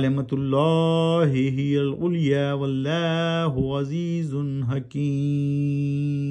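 A man's voice reciting the Quran in Arabic in a melodic, chanted tajweed style (tilawat), in flowing phrases that rise and fall. About five seconds in, the last phrase is held as one long steady note.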